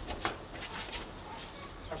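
Several quick footsteps of trainers on floor tiles, short taps and scuffs during a fast stepping drill, thinning out after about a second.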